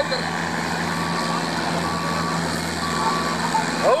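International Harvester tractor engine running steadily under full load while pulling a weight-transfer sled. Three short, even beeps sound about a second apart in the middle.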